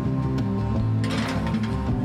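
Soft background music throughout. About a second in comes a short metallic scrape of a metal muffin tin sliding onto a wire oven rack.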